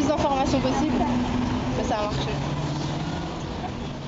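People's voices in short bursts of talk over the steady hum of street traffic, the whole sound gradually fading out towards the end.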